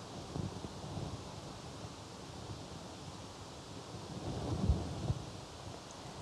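Faint rustle and low rumble of clothing brushing a clip-on microphone as the arms move, swelling briefly about four to five seconds in.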